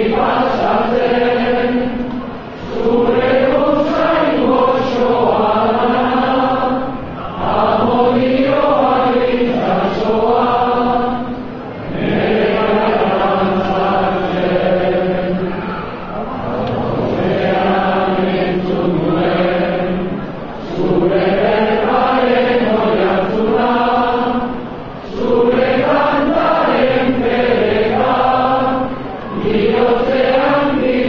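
A large crowd of men and women singing a Basque song together in unison, in phrases of a few seconds each with short breaks between them. The singing rings under a vaulted stone arcade.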